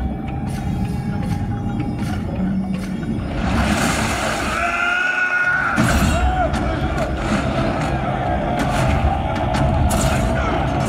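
A film soundtrack playing over cinema speakers: music mixed with voices and low rumbling effects, with a high wavering voice-like sound about five seconds in.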